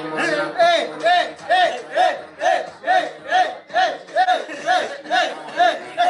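A small group of men chanting in unison, one short shout about twice a second, kept up evenly throughout.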